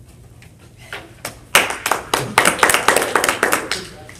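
Brief hand clapping from a small audience, starting about a second in as a run of quick, sharp claps and stopping just before the end.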